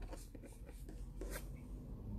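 Faint, irregular scratching and rubbing, a few short scrapes, the clearest about one and a half seconds in.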